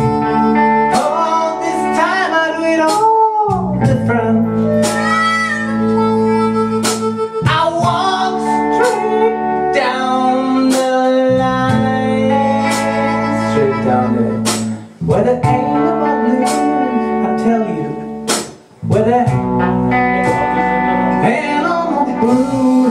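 Live blues band playing an instrumental passage: electric guitar and bass over a cajon beat, with a bending lead line. The band stops briefly twice in the second half.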